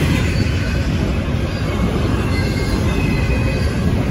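Double-stack intermodal freight train rolling past at close range: a steady loud rumble of wheels on rail, with faint high squeals from the wheels now and then.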